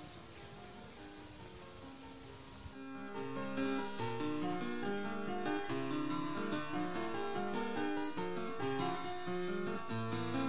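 Instrumental background music: a plucked string instrument, harpsichord-like, playing a quick run of notes. It is faint at first and comes up louder about three seconds in.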